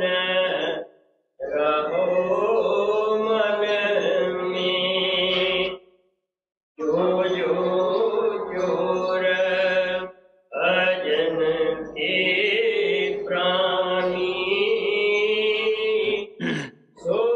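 A single voice chanting the lines of a devotional hymn in long, drawn-out melodic phrases, with brief pauses between them and one full silence about six seconds in.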